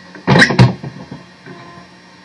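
Electric guitar strings struck briefly, two quick hits about half a second in, then the strings go quiet over a low steady hum.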